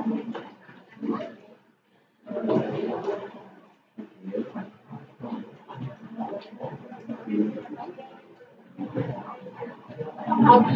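Indistinct voices talking, with short pauses.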